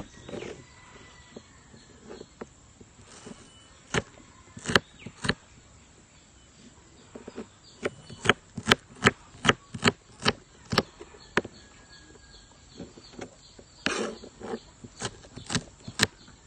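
Knife dicing a red onion on a board: sharp knocks of the blade striking the board. The knocks are scattered at first, then come in a quick run of about three a second around the middle, then a few more near the end.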